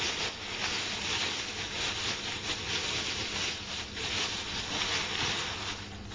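Thin white plastic bag crinkling and rustling steadily as hands work a stuffed toy out of it.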